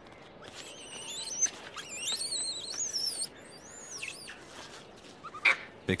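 Hanuman langur giving a run of high-pitched calls that rise and fall in pitch, lasting from about one to three seconds in, with one more short call near four seconds.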